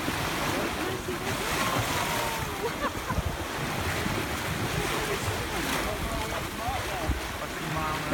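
Sea water rushing and splashing along the hull of a sailing yacht under way, with wind buffeting the microphone.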